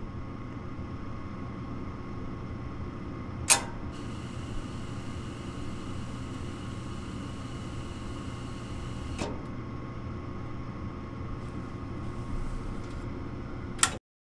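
Gas furnace's inducer draft motor running with a steady hum. About three and a half seconds in, the gas valve clicks open and gas hisses through the burner orifices for about five seconds before the valve clicks shut again. No burner lights because the hot surface igniter is disconnected, and with no flame detected the valve closes.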